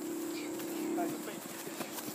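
Quiet outdoor lull on a grass field: faint, distant children's voices and a few soft footfalls on the grass near the end.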